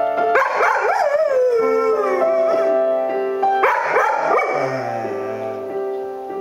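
Golden retriever howling along with a piano: two wavering howls, the first starting about half a second in and sliding down in pitch, the second about three and a half seconds in, over steady piano notes.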